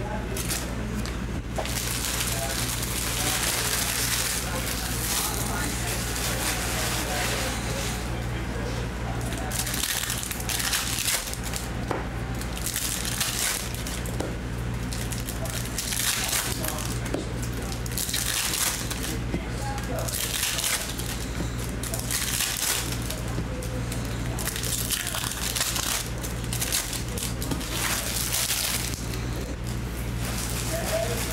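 Foil trading-card pack wrappers crinkling as packs are torn open and handled, with cards shuffled and stacked, over a steady low electrical hum.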